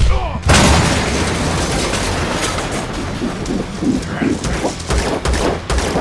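Fight-scene sound effects from a film soundtrack. A sudden loud crash comes about half a second in, then a continuous din of crashing and sharp hits, with rapid gunshots toward the end.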